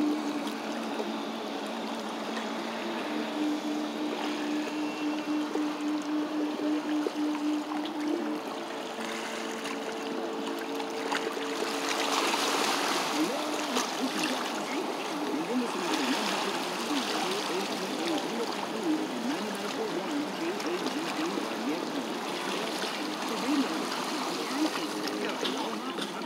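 Sea water lapping and washing against a rocky sea wall: a steady sloshing hiss that swells briefly around the middle. A steady low hum runs through the first half, and faint voices come and go later.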